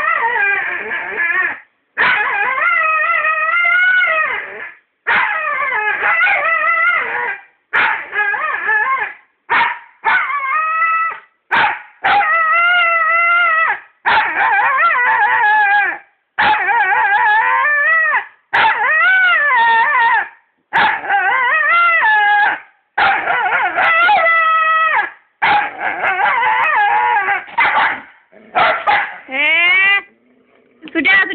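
A dog howling and whining over and over, with some short yips between. Most calls last one to two seconds and waver in pitch. The dog is asking for a ball.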